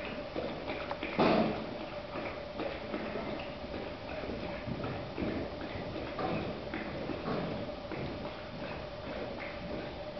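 Hoofbeats of a horse cantering under saddle on soft arena dirt: muffled, irregular footfalls, with one louder thump about a second in. A steady faint hum runs underneath.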